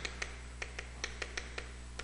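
Chalk writing on a chalkboard: a string of faint, sharp, irregular taps and ticks as the chalk strikes and lifts from the board, over a low steady hum.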